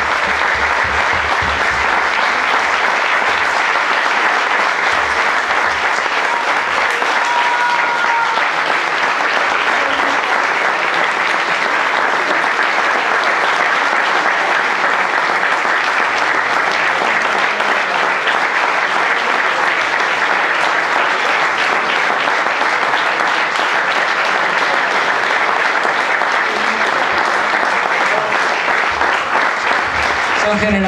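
A crowd applauding, sustained and steady throughout.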